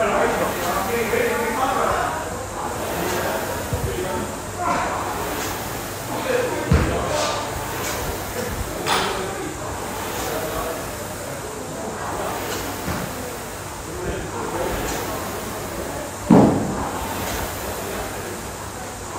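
Indoor rowing machine being rowed hard, its flywheel rushing with each stroke about every two seconds, under background voices in a large echoing hall. Two heavy thuds, the louder one near the end.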